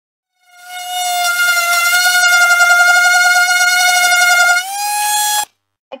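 Handheld electric sander running against wood: a steady, loud high-pitched whine that fades in over the first second, rises slightly in pitch near the end and then cuts off suddenly.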